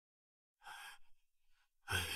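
Mostly dead silence, with a faint breathy sigh a little over half a second in. Just before the end, a louder, sudden breathy sound with a low thump begins.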